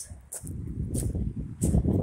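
Footsteps crunching on loose river cobbles and gravel, irregular crackly steps over a low rumble that grows louder near the end.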